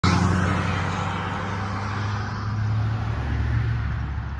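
Motor vehicle engine running close by: a steady low hum with road or tyre noise that slowly eases off.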